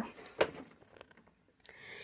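A quiet room between sentences, broken by one short, sharp sound about half a second in. A soft hiss rises near the end.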